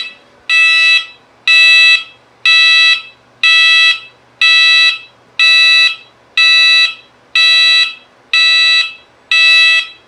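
Gent fire alarm sounder in a ceiling-mounted S-Quad detector head, activated in a device test. It gives a loud pulsed alarm tone, about one pulse a second.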